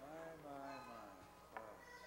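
A faint, indistinct voice in the hall, its pitch bending over the first second, with a short click about a second and a half in.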